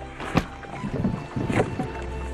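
Film sound effects of small wooden boats being handled at the water's edge: a sharp knock, then a second or so of scraping, sloshing handling noise, over a soft sustained orchestral note.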